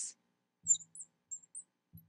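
Marker squeaking on a glass lightboard while writing, a few short, very high chirps over about a second.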